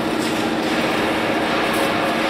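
A steady mechanical hum with a constant low drone, even in level throughout.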